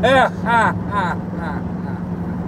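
Men laughing in three quick bursts over the first second or so, over the steady low drone of a car cabin with a window open.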